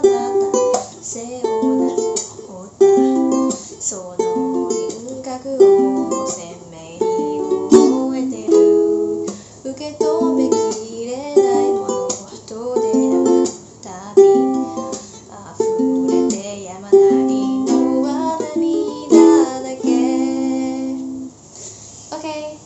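Ukulele strummed in a steady rhythmic pattern through the chord progression Am, G, F, C, ending on a held chord near the end.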